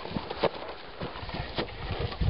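Irregular thumps and scuffling of feet on grass as several people grapple and stumble.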